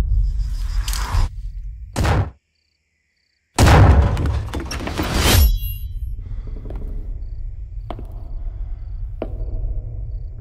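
Horror-trailer sound design: a low rumbling drone with a short swell, a moment of dead silence, then a loud hit about three and a half seconds in that swells and fades. After it comes a quieter low drone with a few sharp knocks.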